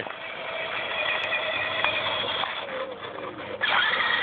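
Power Wheels battery-powered ride-on toy quad driving along a concrete sidewalk: a steady whine from its small electric motor and gearbox.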